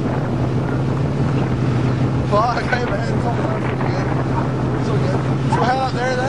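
Car engine idling steadily with a low, even hum.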